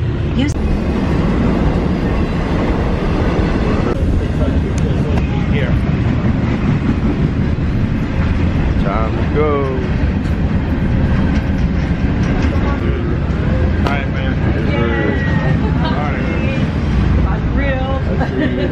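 A train running at a station platform: a loud, steady low rumble, with faint voices over it.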